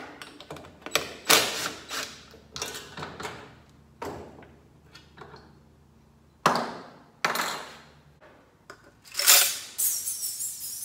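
A cordless drill run in several short bursts, backing out the screws that hold a rope recoil starter to a small generator's plastic fan housing. Between the bursts come clicks and clatter of the plastic housing and small metal parts being handled.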